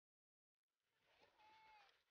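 Near silence: the sound track is dead for the first second, then fades in faintly, with one faint, short, drawn-out call near the end.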